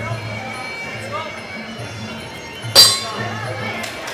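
A single sharp metallic clang of the ring bell, ringing briefly about three quarters of the way in, marking the end of the round. Background music with a steady low beat plays throughout.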